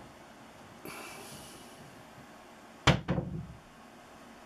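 Handling sounds as a flint point is picked up off a fleece cloth: a soft rustle about a second in, then two sharp clicks close together near three seconds in, followed by a dull thud.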